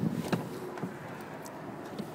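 Quiet steady background noise with a few faint, light clicks.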